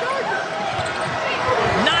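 Basketball game sound in a packed arena: crowd noise with sneakers squeaking on the hardwood court. The crowd gets louder near the end.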